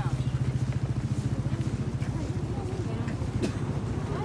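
An engine running at idle with a steady, rapid low throb, under faint chatter of people walking.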